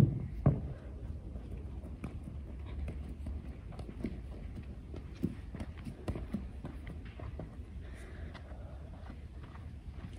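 A medicine ball thuds onto artificial turf at the very start, with a second thud about half a second later. After that come scattered light footsteps and soft knocks as the ball is rolled and picked up.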